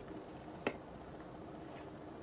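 A single short click about two-thirds of a second in, over faint room tone, as hands squeeze a pair of soft squishy toy cans together.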